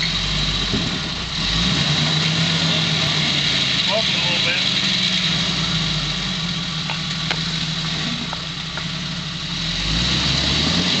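Jeep Wrangler YJ engine running at low revs as the locked Jeep crawls over a rock ledge. The engine note steps up a little about a second and a half in, then holds steady.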